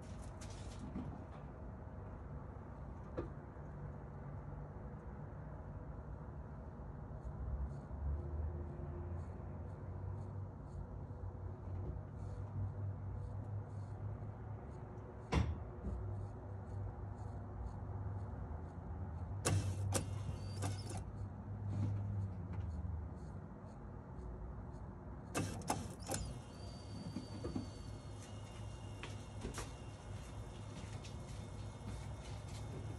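Electric fuel pumps of a 1989 Mercedes 560SEC running with the fuel pump relay jumped: a steady low hum with faint regular ticking and a few sharper clicks. The car has no fuel delivery, and the owner suspects the pumps, which he has described as clicking and knocking rather than running smooth.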